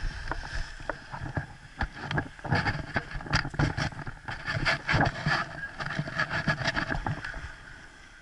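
Paraglider launch run: rustling of the wing and lines, then a quick, irregular patter of footfalls and scuffs on grass that fades near the end as the pilot's feet leave the ground.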